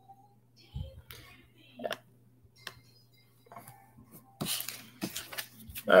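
Scattered light clicks and brief rustles of handling at a desk, with a denser patch of rustling near the end, over a faint steady low hum.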